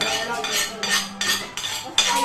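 A spoon and fork scraping and clinking against a plate in quick, repeated strokes as food is scooped up.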